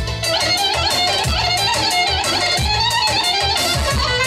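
Loud amplified live dance music from a keyboard synthesizer, with a steady bass beat and a fast, wavering, ornamented melody in a violin-like voice.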